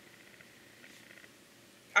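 Near silence: faint, steady room noise in a pause between speech, with speech starting abruptly at the very end.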